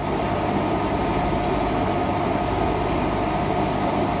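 Steady mechanical hum and hiss of running equipment, with a few faint held tones, going on evenly without change.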